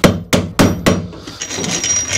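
Plastic-faced hammer tapping a part into a Simson moped engine's crankcase: four quick, sharp knocks in the first second, followed by quieter handling noise.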